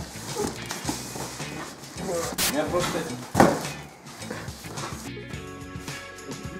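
Cardboard packaging being opened and handled: rustling, with sharp strokes about two and a half seconds in and a louder thump about three and a half seconds in, over voice sounds and background music. Near the end only the music remains.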